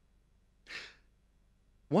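A man's short breath picked up close by a headset microphone, a brief puff a little over half a second in, with quiet room tone around it. Near the end his voice starts speaking.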